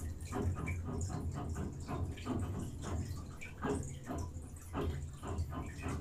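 Faint, irregular water-like patter and splashing over a steady low hum.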